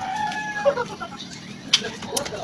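A rooster crowing in the background: one short, held call over the first half second or so.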